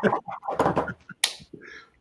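A person laughing, with a single short, sharp click-like snap about a second in.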